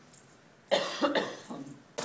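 A man coughing: a quick run of three harsh coughs about two-thirds of a second in, then another as the next sentence begins.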